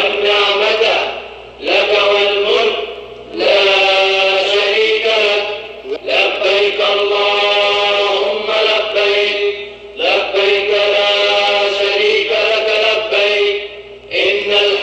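Voices chanting in long, drawn-out phrases of a couple of seconds each, with short breaths between: a devotional chant.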